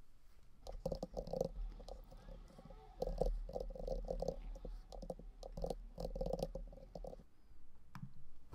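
Typing on a computer keyboard in several short bursts, with brief pauses between them.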